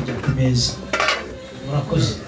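Plates and cutlery clinking, with one sharp clink about a second in, over a man's voice through a microphone.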